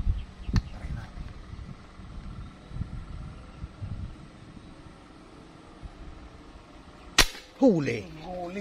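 A single shot from a PCP air rifle about seven seconds in, one sharp crack, followed at once by a short exclaiming voice. Before it come a few faint clicks and knocks as the gun is held on aim.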